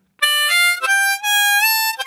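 Diatonic harmonica in standard Richter tuning playing a third-position blues scale: single notes stepping upward one after another, starting about a quarter second in. Near the end the 6 draw's one easy bend slides up into the unbent note.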